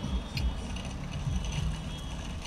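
Drinking from a plastic water bottle: sips and swallows with handling noise and a small click about half a second in, over a low rumble.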